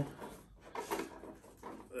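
Faint, irregular handling noises as the RC truck and the plastic wrap on its bumpers are handled.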